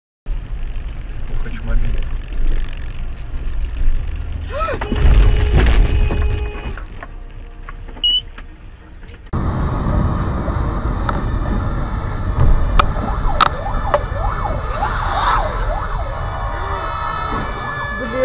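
Dashcam recording of traffic noise with a loud burst about five seconds in; after a sudden cut about halfway through, a fire engine's siren wails up and down over road noise heard from inside a car, with a few sharp clicks.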